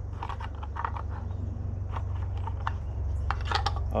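Scattered light plastic clicks and taps as the parts of a Mazda 3 tail light, its housing and lens, are handled and fitted together, over a steady low hum.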